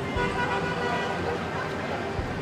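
City street traffic with a car horn sounding and people's voices in the background.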